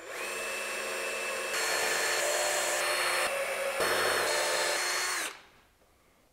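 Cordless drill running into a mango wood slab at a steel table leg's mounting plate: one motor whine of about five seconds that steps up in speed about a second and a half in, shifts a couple more times, and stops suddenly near the end.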